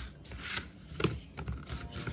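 Collapsible plastic crate being unfolded by hand: the plastic panels rub and scrape, and one sharp click about a second in as a side snaps into place.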